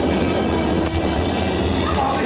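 Loud, steady rumbling film sound effect of a giant ball rolling.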